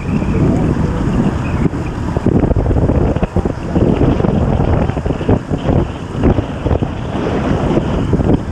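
Loud wind rush buffeting the microphone of a camera on a bicycle racing at about 29 mph, rising and falling unevenly.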